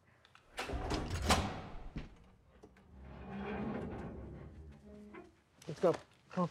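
Movie soundtrack: heavy sliding and scraping sounds as a bank vault is worked open, over music. A loud rush about half a second in lasts over a second, and a softer one follows around three seconds.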